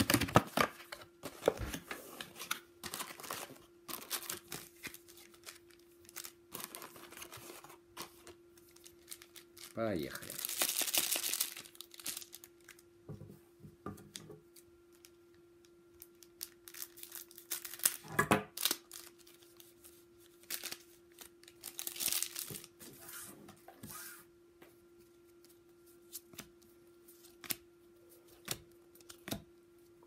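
Cardboard card box being opened, then foil trading-card pack wrappers crinkling and tearing, with scissors cutting a pack and cards being handled. There are two longer crinkling tears, about ten and twenty-two seconds in, over a steady low hum.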